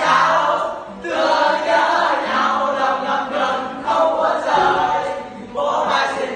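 A large group of students singing together as a choir, in phrases with short breaks about a second in and again near the end.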